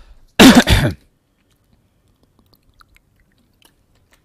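A man coughs, a short double cough about half a second in, followed by quiet with a few faint small ticks.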